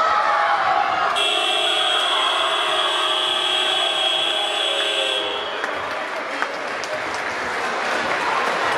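The sports hall's electronic buzzer sounds one steady tone for about four seconds, starting about a second in and cutting off sharply, over crowd noise and shouting.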